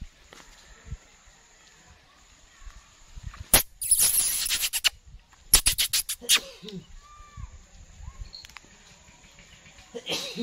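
Hobby falcon flapping its wings on a gloved fist close to the microphone. A loud rush of wing and feather noise comes about four seconds in, then about a second later a quick run of sharp wing beats.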